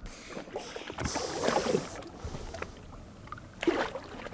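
Slushy ice water splashing as two young Weddell seals tussle at the surface, loudest about a second in, with a short snort near the end.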